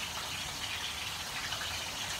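Chicken wings deep-frying in hot oil in a cast iron skillet, a steady sizzle.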